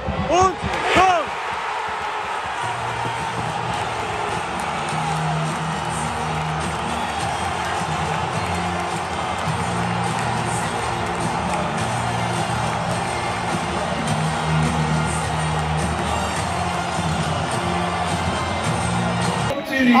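A stadium crowd cheering a goal, with music playing over it on a steady repeating bass line. A man's excited shout comes in the first second.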